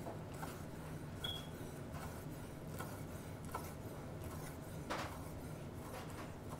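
A chef's knife chopping a roasted jalapeño on a wooden cutting board: faint, irregular knocks of the blade against the wood, the strongest about five seconds in, over a low steady hum.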